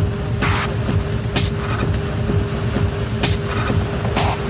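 Dark, hypnotic techno with a dense, rumbling low-end pulse and a steady held tone, cut through by short hissing noise bursts every second or two.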